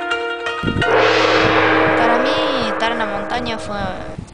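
Plucked-string music ends, and about half a second in a sudden gong-like crash rings out in a long fading wash with a held low tone. A voice comes in over it in the second half.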